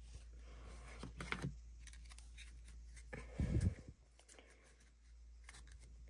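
Faint clicks and rustle of a stack of baseball cards being slid apart and flipped through by hand, with a soft, low bump a little past the middle.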